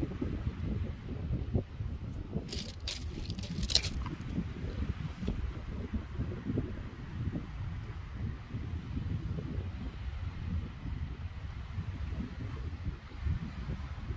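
Wind buffeting the microphone as a steady, uneven low rumble, with a quick run of sharp clinks of small hard objects about three seconds in.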